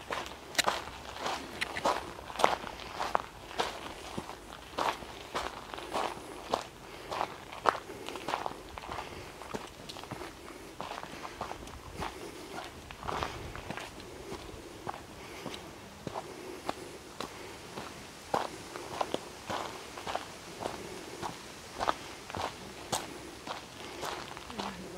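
Footsteps of a hiker walking at a steady pace on a dirt trail, about two steps a second.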